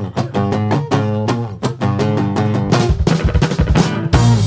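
Rock band playing live: strummed acoustic and electric guitars keep a steady rhythm over drums. The drum hits grow denser in the last second or so as the intro builds up.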